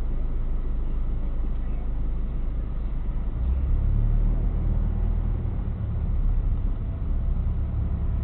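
Car engine and road noise heard from inside the cabin through a dashcam's microphone as the car moves along in slow traffic. About three and a half seconds in, the low engine note changes and grows stronger as the car gets under way.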